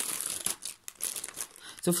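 Plastic mailer bag crinkling and rustling as it is handled, in a few short spells with a brief lull about halfway.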